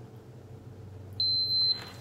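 Blood glucose meter beeping once: a single steady high-pitched tone about half a second long, a little over a second in.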